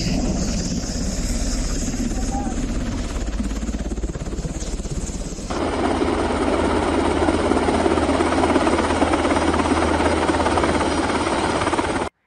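Military helicopter running close by: a steady rotor and engine noise with a fast rotor beat. About five and a half seconds in, it cuts to another helicopter recording, louder in the middle range.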